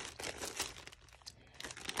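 Clear zip-top plastic bag rustling and crinkling as it is handled, in short crackly bursts with a brief lull about halfway through.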